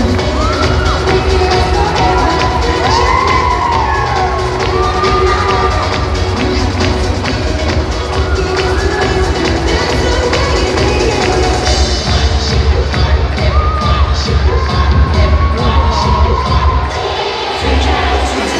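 A 90s dance-music mix with a steady beat plays over the hall's sound system, with the audience cheering and children shouting over it.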